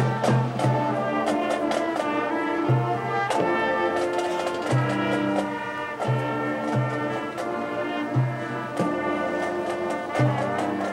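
Marching band playing: full brass chords held over percussion hits, with low brass notes sounding again and again.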